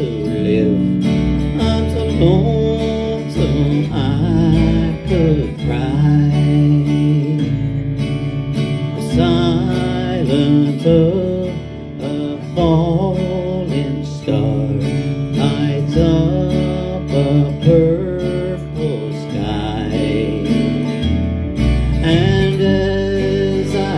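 Instrumental break of a slow country waltz played live: strummed acoustic guitar and bass guitar under a wavering lead melody line.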